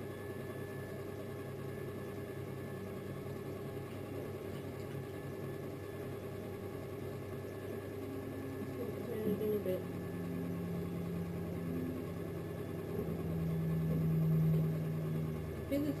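Electric potter's wheel running with a steady motor hum while wet clay is thrown on it. About ten seconds in a lower steady tone joins the hum and grows louder near the end.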